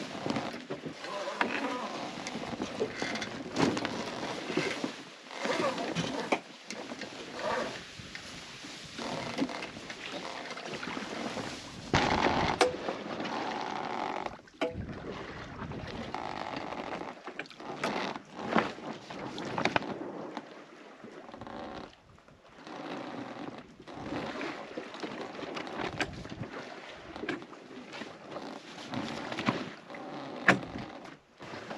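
Spinnaker being hoisted by hand and then flying in light air: the sail cloth rustling and flapping in uneven swells of noise, with a few sharp clicks from the rigging.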